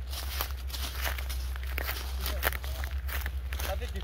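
Footsteps through grass, about two or three steps a second, over a steady low rumble.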